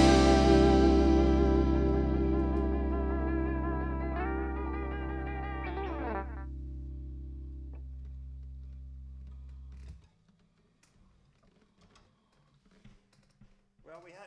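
Final chord on a distorted, effects-laden electric guitar, left ringing and slowly fading. About four seconds in a higher wavering note sounds and then slides down in pitch. The low ringing notes cut off suddenly about ten seconds in, leaving near silence with a few faint clicks.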